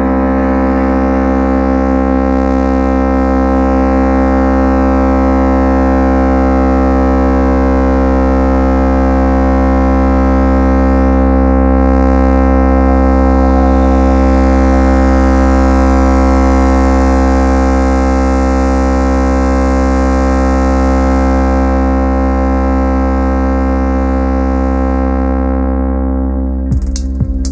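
Electronic techno music in a beatless breakdown: a sustained synthesizer chord drone held over a deep, steady bass, with no drums.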